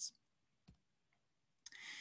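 Near silence, with a single brief click about two thirds of a second in and a faint breath-like hiss starting near the end.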